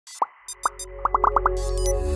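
Animated intro jingle: a quick string of short, rising popping blips, bunched together about a second in, over a low synth tone that swells toward the end.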